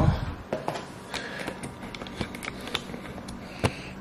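Scattered light clicks and soft rustling of things being handled, with handling noise from a phone held close against cloth.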